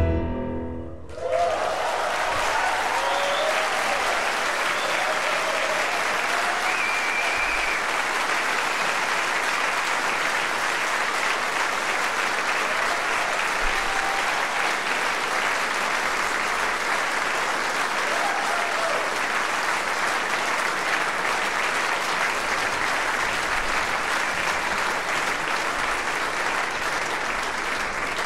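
The band's last notes die away about a second in, and a concert audience breaks into steady, sustained applause. A few cheers rise over the clapping.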